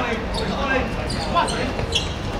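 A football being kicked and bouncing on a hard outdoor court: a few sharp thuds, the clearest near the end, with players shouting.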